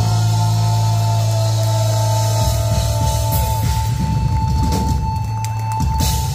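Heavy metal band playing live through a PA: a low chord is held under a steady high guitar note, with sliding guitar pitches over it. About halfway through, the drums come in with irregular fills, and there are a few cymbal strokes near the end.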